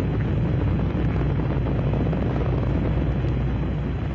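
Saturn V rocket's first-stage engines during ascent after liftoff: a steady, loud, deep rumble.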